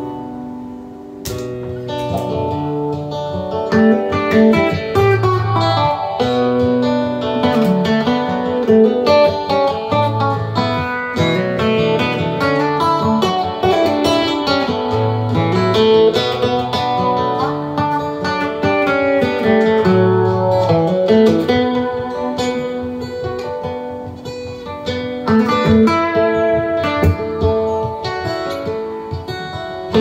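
Steel-string acoustic guitar with a capo, played as a flowing instrumental of plucked, arpeggiated notes. A low bass note comes back about every five seconds.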